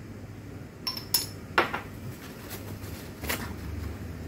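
Small glass flask clinking against a hard surface a few times while cleaning solution is poured from it, the loudest clink about one and a half seconds in, with a short ring after it.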